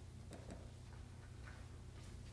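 Faint rustling and soft ticks of sheet music pages being handled and shuffled, a handful of small sounds over a low steady room hum.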